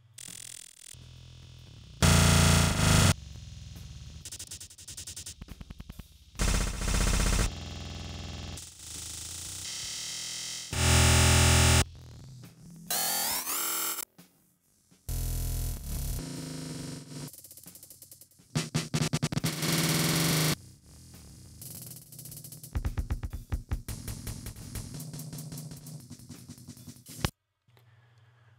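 A drum loop played through a pitch-shifting grain looper patch made in Max Gen, chopped into abrupt, stuttering glitch fragments that jump in pitch and loudness. About halfway through there is a short run of sweeping pitch glides.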